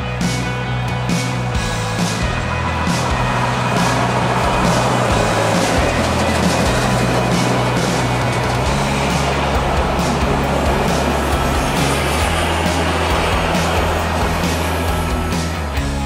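Rock background music with a steady beat, mixed with the noisy rush of a steam locomotive and its train passing close by. The train noise swells through the middle and fades away near the end.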